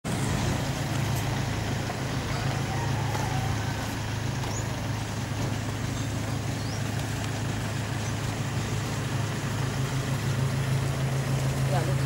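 A steady low mechanical hum, like a motor running, holds an even pitch throughout under a haze of outdoor background noise. Faint voices come through about a quarter of the way in.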